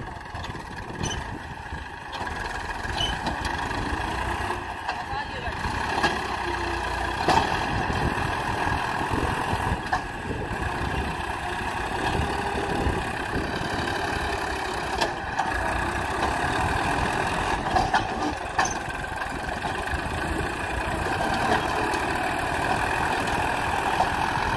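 Massey Ferguson 241 tractor's three-cylinder diesel engine running hard under load as it strains to pull a loaded soil trolley bogged in soft sand. The engine note picks up about two seconds in and then holds steady.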